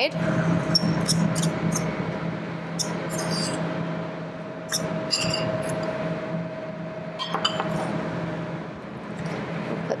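A spoon tossing salad in a small bowl, with scattered light clinks and scrapes, over a steady low hum of kitchen equipment.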